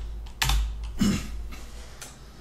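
Computer keyboard keystrokes: a few quick key clicks about half a second in, then a heavier keypress about a second in.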